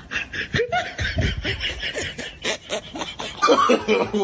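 A person laughing in quick, repeated bursts that grow louder near the end.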